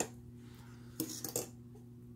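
A few light clicks and knocks of hard plastic toy pieces being handled, grouped about a second in, over a faint steady hum.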